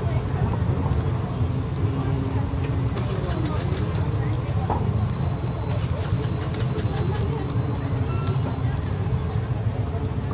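Busy street-market ambience: a steady low rumble of traffic under the scattered voices of passers-by. A short, high-pitched electronic beep sounds once, about eight seconds in.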